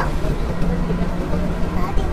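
Bus engine running with a steady low drone, heard from inside the passenger cabin.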